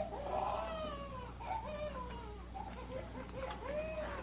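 A baby crying in a string of short, wavering wails that rise and fall in pitch, thin and muffled as on an old radio broadcast.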